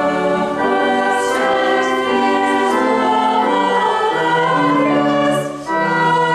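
A church choir singing a carol in long, sustained phrases, with a short break between phrases near the end.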